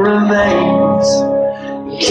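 Acoustic guitar strummed in a live song, its chords ringing; the level drops for the last half second before the next strum.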